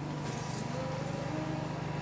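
A steady low hum with faint, indistinct background sounds over it; nothing sudden stands out.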